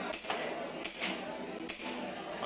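Airsoft pistol fired three times, sharp shots a little under a second apart.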